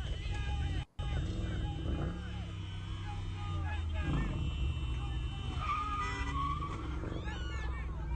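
Car engines running and revving, with tyres scrubbing and squealing on asphalt, as a police cruiser and a red car push against each other. Excited voices of onlookers are heard over it.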